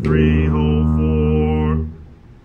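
Tuba holding one long low note, the final held note of the exercise, played together with its play-along practice recording; the note stops near the end.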